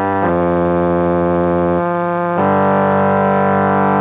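Dungeon synth keyboard music: a synthesizer holding slow, sustained chords over a low drone, the chord changing a moment in and again just before halfway, with no drums.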